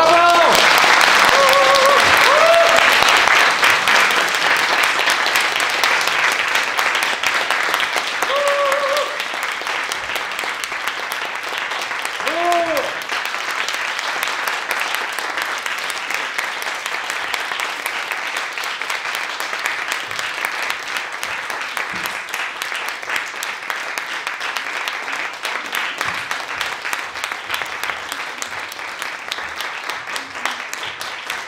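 Audience applauding, loudest at the start and easing a little, with a few short voices calling out in the first dozen seconds.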